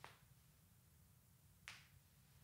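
Near silence: room tone with a low hum, broken by two faint, short hisses, one at the start and one near the end.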